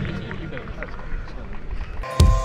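Open-air ambience with faint, indistinct voices and light rustling and ticks.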